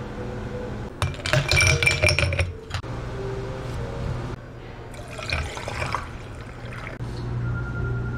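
Drink-making sounds: glassware clinking and liquid pouring in two short busy bursts, about a second in and again around five seconds, over a steady low hum.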